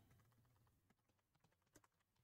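Very faint computer keyboard typing: a quick, irregular run of soft key clicks.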